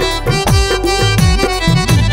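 Instrumental break in an Angika jhoomar folk song: hand-drum strokes whose pitch slides down, several a second, over sustained melody notes.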